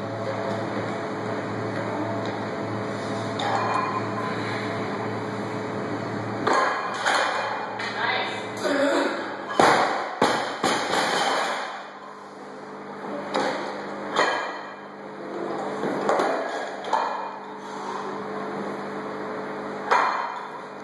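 Gym room sounds between lifts: scattered metal clinks and knocks of barbell equipment, with low voices. A steady low hum stops about six seconds in.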